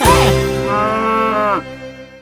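A cow's long, drawn-out moo over a held closing music chord. The moo ends about a second and a half in, and the music then fades away.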